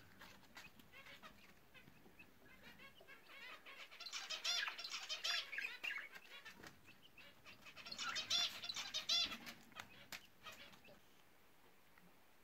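Budgerigars chirping and chattering in two bouts of rapid, repeated chirps a few seconds long, with a pause between.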